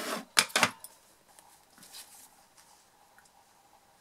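Two quick, sharp clacks about half a second in, from a hard object knocked on the craft desk, followed by faint handling of card stock.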